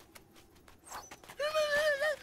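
Cartoon sound effects: a light pattering of quick footsteps at about four a second fades out. From about one and a half seconds in, a cartoon hyena gives a loud, high, wavering cry as it dashes off.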